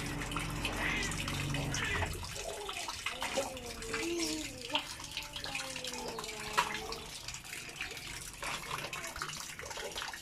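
Water pouring and splashing from a small plastic toy onto wet concrete, with scattered small taps and clicks.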